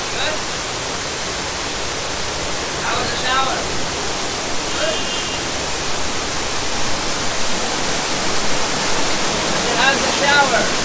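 Artificial waterfall fountain pouring down a stone wall: a steady rush of falling water.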